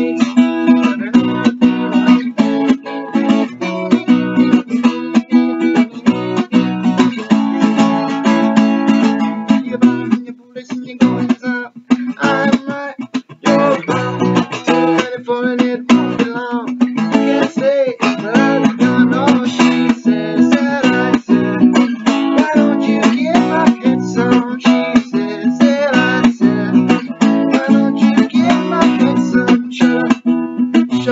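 Steel-string acoustic guitar strummed in a fast, steady rhythm. The strumming thins out briefly about ten seconds in, then picks up again.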